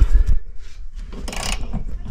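Handling noise from a handheld camera and a hand working at a truck sleeper bunk's mounting: a few dull low thumps at the start, then a short stretch of scraping and rubbing in the second half.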